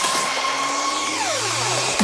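Uplifting trance build-up with the beat dropped out: a whooshing noise sweep and a synth tone gliding down in pitch over the second second, under a low tone rising. The kick drum and bass come back in at the very end.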